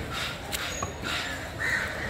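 Crows cawing over the background noise of an open market, with a short harsh caw about a second and a half in. A couple of faint knocks come near the middle.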